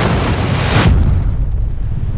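Film sound-effect storm impact: a heavy boom with a rushing surge of noise that cuts off just under a second in, then a deep continuous rumble.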